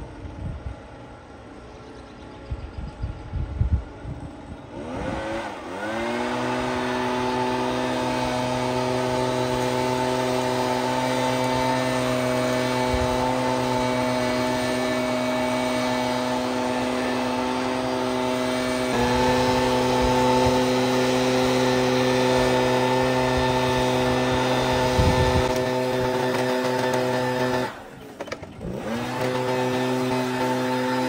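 Backpack leaf blower spinning up about five seconds in and then running at a steady high speed, blowing leaves out of a roof gutter. It gets a little louder partway through, drops off briefly near the end and spins back up.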